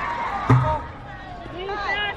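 A single sharp thump about half a second in as a pitched baseball reaches the catcher behind the plate, followed by high children's voices calling out.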